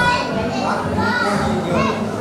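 Speech: a man speaking aloud to a seated group.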